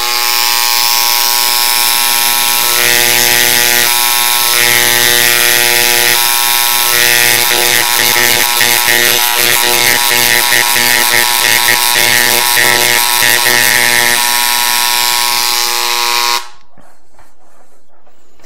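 Electric Dremel engraver buzzing steadily as its engraving tip cuts lettering through a paper label into a plastic battery case. The buzz takes on a rougher, chattering edge from about three seconds in until about fourteen seconds, while the tip works the surface, and the tool switches off about sixteen seconds in.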